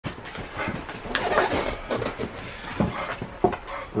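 A dog panting and moving about on a sofa: a run of short, uneven breathy sounds.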